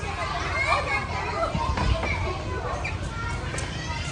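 Children's voices chattering and calling over one another, mixed with indistinct adult talk, over a steady low rumble.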